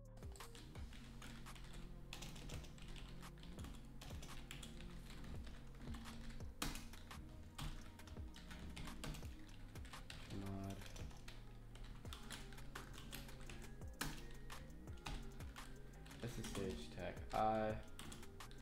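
Computer keyboard typing: runs of quick keystrokes as terminal commands are entered, over quiet background music.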